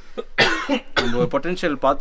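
A man coughs once, a short harsh burst about half a second in, then goes on talking.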